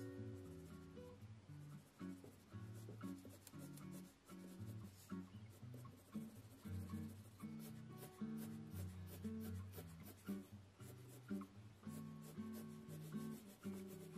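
Mechanical pencil with 2B lead scratching on Strathmore sketch paper in many quick shading strokes, faint, over soft background music.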